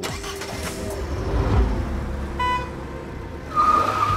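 Motor-vehicle noise: a car engine rumbling, a short beep about halfway through, then a steady high squeal near the end.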